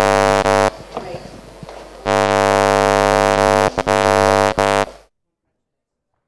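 A loud, steady, horn-like buzzing drone on one unchanging pitch, cut off abruptly after under a second, back about two seconds in with two brief dropouts, then stopping dead about five seconds in.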